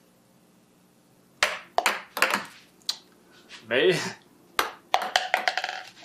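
Small plastic balls bouncing on a wooden tabletop and knocking into plastic cups: a run of sharp, short clicks in two spells, the second quicker.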